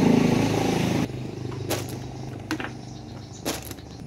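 A motorcycle engine running close by: loud for about the first second, then a steady low drone that fades near the end. A few short clicks come over it as the bike's wire basket is handled.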